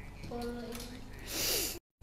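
A person's short, loud, hissy breath through the nose, a snort, about a second and a half in, after a few faint vocal sounds. The audio then cuts out suddenly just before the end.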